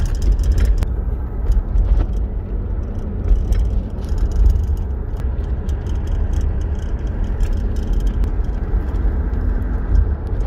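Car driving along a paved road, heard from inside the cabin: a steady low rumble of engine, tyre and wind noise.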